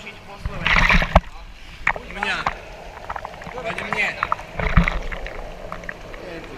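A man talking over the steady bubbling and sloshing of water in a whirlpool bath, with a couple of louder splashy bursts close to the microphone.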